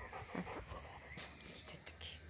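Weimaraner panting close to the microphone as it mouths and noses a plush toy in the grass, with short rustles and a few sharp clicks near the end.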